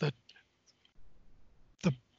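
A man's speech breaking off for a pause between phrases, with a few faint clicks in the gap, then picking up again near the end.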